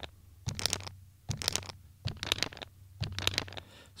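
Roland SP-404 MKII sampler playing a scratchy percussive loop pitched down six semitones: sharp hits, mostly in close pairs, repeating a little under once a second over a low hum.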